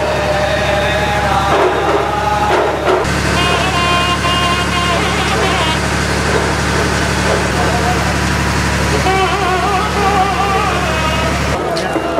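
A group of men chanting together in drawn-out, wavering lines, over a steady low engine-like hum.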